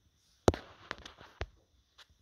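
Small plastic soldier figure's base knocking on a hard tabletop as it is set down: three sharp clicks about half a second apart, the first the loudest, with fainter ticks between.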